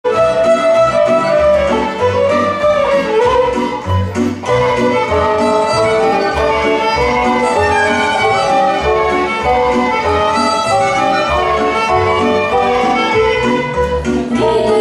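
Romanian folk orchestra playing the instrumental introduction to a song: a section of violins carries a lively melody over plucked strings and a double bass marking the beat.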